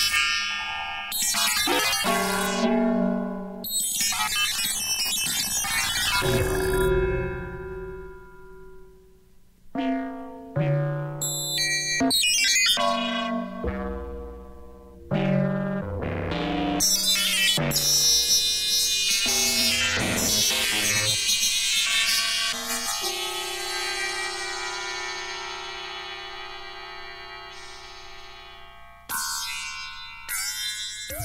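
Electronic synthesizer music: a run of sharp-edged chords and notes that ring and die away, with brief pauses between phrases. In the second half, a single tone is held steadily under fading high chords.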